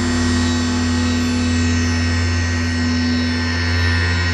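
Sequential Prophet 12 synthesizer playing a preset patch: a steady low drone with a held higher tone above it and a dense shimmer of bright overtones, crossed by thin falling sweeps high up about once a second.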